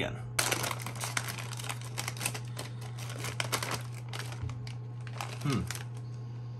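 A Herr's Sandwichips potato-chip bag crinkling as it is handled, a dense run of crackles lasting about four seconds. A low steady hum runs underneath.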